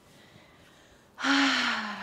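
A woman's loud, breathy exhale, like a voiced sigh, that comes in suddenly a little past halfway after a quiet stretch. Its pitch falls slightly, and it runs on into her speech.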